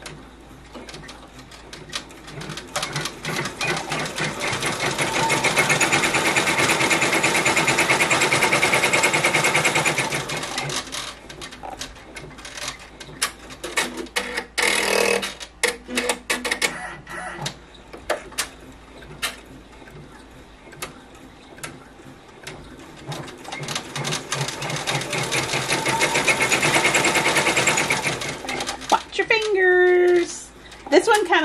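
Ricoma multi-needle embroidery machine stitching chunky chenille yarn with a rapid, rattling run of needle strokes. It swells loud twice, over the first third and again near the end, with a broken, quieter stretch of stitching between.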